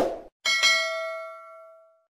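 Subscribe-button sound effect: a quick click, then a single notification-bell ding about half a second in that rings and fades away.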